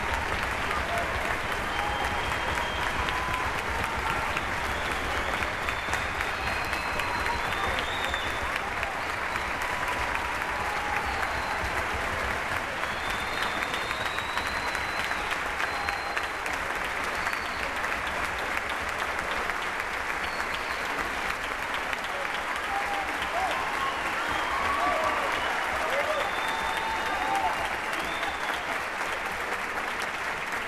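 A concert-hall audience and orchestra applauding steadily at length, with voices calling out over the clapping.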